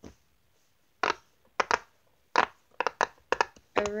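Circular silicone pop-it fidget toy having its bubbles pressed: about a dozen short, sharp pops, a few spaced out at first and then quicker after about two seconds.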